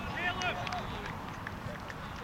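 Distant voices calling across a grass football pitch during play, with one raised call in the first second, over a steady low rumble and a few faint knocks.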